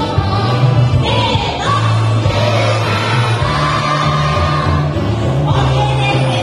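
A woman singing into a microphone over a pop backing track with a steady beat, amplified through a stage PA, with several long held notes.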